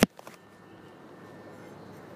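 Phone handling noise: a sharp knock at the very start and a couple of light clicks just after, then faint steady background noise.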